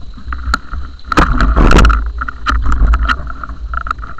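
A tractor pulling a trailed Horsch cultivator passes close by, its engine rumbling low and steady, under a run of sharp clattering knocks from the road-closure signs and cones it has struck. The knocking is loudest and densest about a second in.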